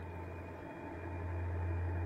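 A low, steady hum under a faint hiss.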